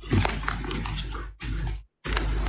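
A person's voice, indistinct and without clear words, picked up by a courtroom microphone. The sound cuts out briefly near the end.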